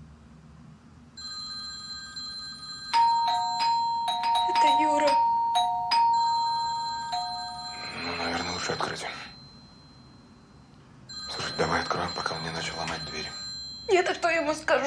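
Doorbell ringing insistently: a ringing tone starts about three seconds in and is broken off and pressed again several times over the next few seconds, the sign of someone at the door waiting to be let in.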